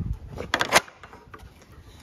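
Metal sliding bolt on a wooden sheep-pen gate drawn open: a quick run of sharp metallic clacks about half a second in, followed by a few faint taps.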